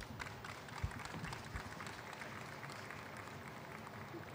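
Audience applauding, the clapping tapering off toward the end.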